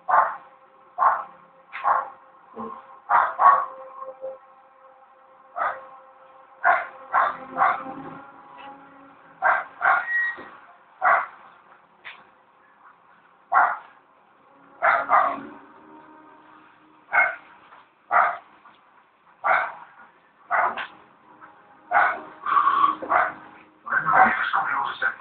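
Short, sharp animal calls repeated about once a second at an uneven pace, each one brief.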